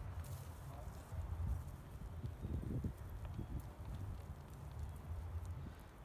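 Spent potting soil being scraped and dug by hand in a plastic pot: soft, irregular scuffs and crumbling, over a steady low rumble.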